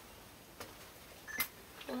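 Quiet room tone with one short, faint click about one and a half seconds in, then a voice starting to murmur right at the end.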